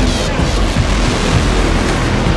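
Fast mountain stream rushing over rocks, a steady roar of water, with background music laid over it.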